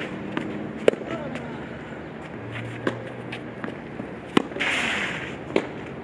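Tennis ball being hit back and forth in a rally on a clay court: sharp pops of racket strikes and bounces a second or more apart, the clearest about a second in and another past four seconds in. Just before five seconds there is a short scuff, likely a shoe sliding on the clay.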